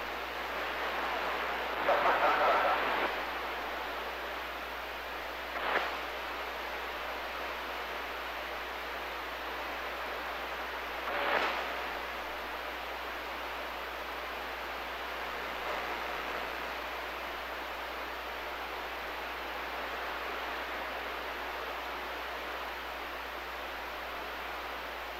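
CB radio receiver static with the squelch open: a steady hiss, broken by a louder crackle of weak signals about two seconds in and two short bursts later on.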